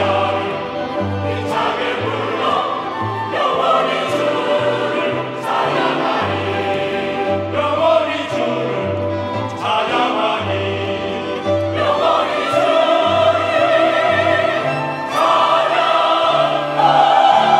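Mixed church choir singing a Korean hymn in full voice with a small orchestra of violins, flutes and cello, through the closing 'forever I will praise the Lord, hallelujah' phrases.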